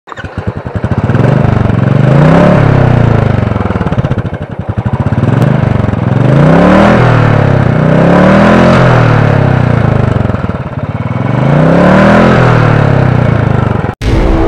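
Royal Enfield Thunderbird 350X's single-cylinder engine being revved repeatedly, its pitch rising and falling back about five times.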